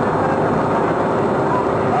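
Belarus farm tractor's diesel engine running steadily while under way, a constant hum with no change in pitch.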